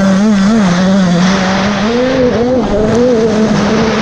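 Dirt bike engine held at high revs, its pitch wavering up and down as the throttle is worked over the terrain. Wind noise and the rush of riding are heard at the rider's helmet.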